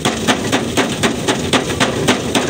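A hand scrubbing straw and chaff across a thresher's wire-mesh sieve to clean it out, a rhythmic scratchy rasping at about four strokes a second.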